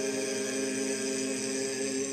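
Barbershop quartet of four men singing a cappella, holding one long, steady chord in close harmony.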